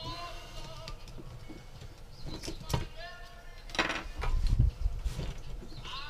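A man's short wordless vocal sounds, like humming or mumbling under his breath, with clicks and knocks from handling a small drone frame and tools on a workbench. The loudest part is a run of clattering knocks a little past the middle.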